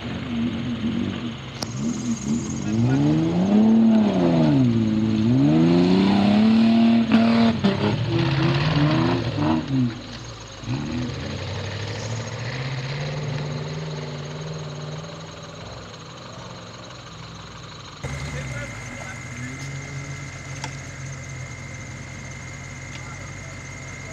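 Off-road 4x4's engine revving hard, its pitch swooping up and down again and again as the throttle is worked while the wheels spin in sand. After about ten seconds it settles into a steadier note that rises slowly as the truck climbs. Near the end a cut brings a lower engine sound with a steady high whine over it.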